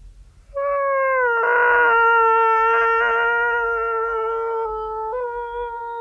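A voice holding one long high note, starting about half a second in with a slight downward slide, then held steady, with a brief dip and return near the end.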